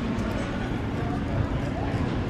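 Steady background noise of a shop floor, with faint, indistinct voices.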